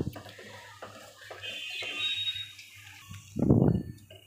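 Herb paste frying in oil in a steel pot, bubbling and sizzling as a spoon stirs it, with a louder rush of noise about three and a half seconds in.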